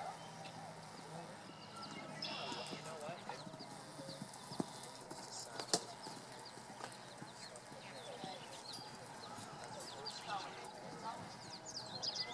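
A horse's hoofbeats as it canters on arena sand, with faint voices in the background. Two sharp knocks stand out about four and a half and six seconds in, and birds chirp near the end.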